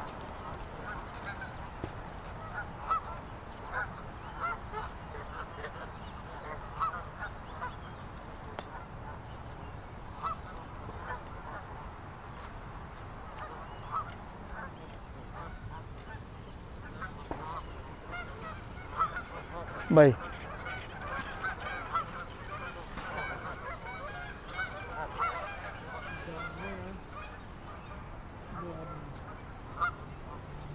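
A flock of Canada geese honking: many short calls scattered throughout, growing busier in the second half. A man's single spoken word about two-thirds of the way through is the loudest sound.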